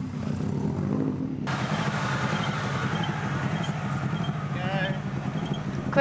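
Rally car engine running steadily at low revs, a low even hum. The sound changes abruptly about a second and a half in, and a brief faint voice comes in near the end.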